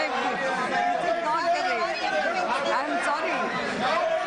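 Many lawmakers shouting and talking over one another in a parliament chamber, a steady din of overlapping voices from members protesting in the House.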